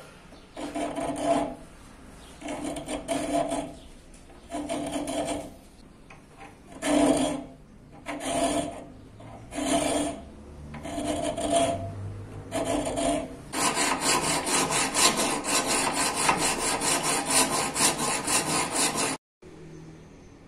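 Flat hand file rasping across the edge of a 5160 carbon-steel karambit blade held in a vise: about eight slow, separate strokes, then a fast run of short strokes that cuts off near the end.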